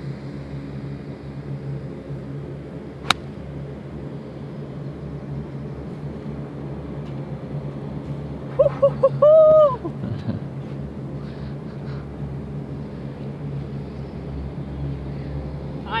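A golf wedge striking the ball off fairway turf: one crisp, sharp strike about three seconds in. Several seconds later comes a loud, high-pitched call of a few quick notes and a longer held one, over a steady low rumble.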